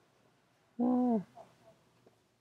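A man's short wordless hum, one held note about half a second long that dips slightly at the end, about a second in.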